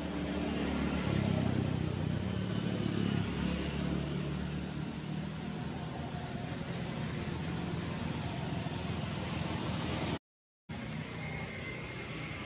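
A low engine-like hum that swells about a second in and eases off after about four seconds, over a steady hiss. The sound cuts out completely for about half a second near the end.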